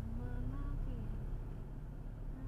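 Car engine and road noise rumbling inside a slowly accelerating car, with a faint wavering voice-like tone over it, held in short notes that slide up and down.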